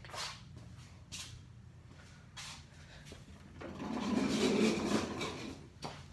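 Handling noise from a phone being carried and set in place: a few light knocks in the first couple of seconds, then a longer rustling scrape in the second half.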